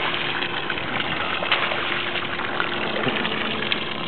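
Boat engine idling steadily, a constant hum over a wash of water noise.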